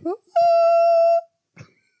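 A man singing: a quick upward slide into one long, loud, held note, steady in pitch, which cuts off abruptly just after a second in.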